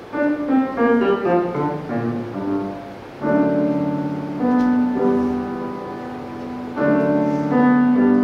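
Solo grand piano playing classical music. A run of notes falls over the first three seconds, then slow chords are struck and left ringing, with fresh chords about a second and a half in from the halfway point and again near the end.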